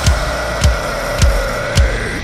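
A rock drum kit playing along to a song's backing track. After a dense passage it drops to sparse beats, a kick-drum thump with a sharp high hit about every half second. Under the beats a held tone in the backing music sinks slightly.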